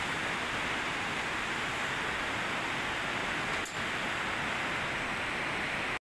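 Steady rushing of the Arize river inside the large cave, an even unbroken water noise, with one faint click about two-thirds of the way through.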